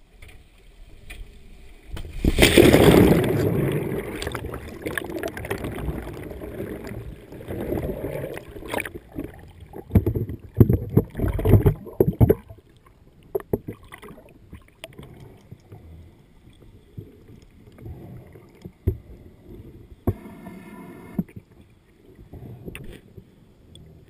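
Water sounds: a loud rush about two seconds in that fades, followed by irregular splashing and gurgling bursts that grow quieter after the first half.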